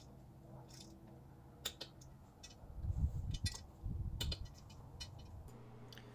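Torque wrench with a six-point socket clicking on the propeller hub bolts as they are tightened to 30 foot-pounds: a few single sharp clicks, then a quick run of clicks about two thirds of the way in, with low rubbing and handling noise.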